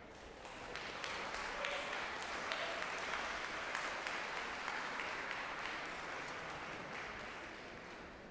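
Audience applauding. The clapping builds over the first second and tapers off near the end.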